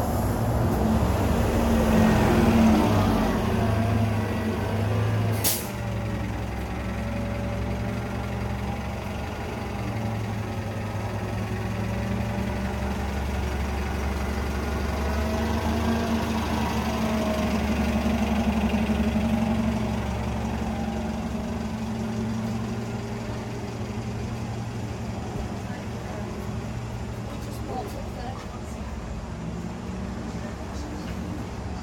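Compressed-natural-gas city bus running close by with a steady low engine hum that is loudest early on and swells again past the middle. About five and a half seconds in comes a short hiss from its air brakes, and the engine gets quieter after it.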